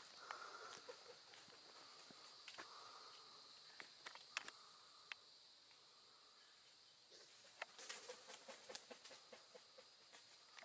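Turkey vultures flapping and shifting among the tree branches: a faint scatter of wingbeats and leafy rustles, thickest near the end, over a steady faint insect buzz.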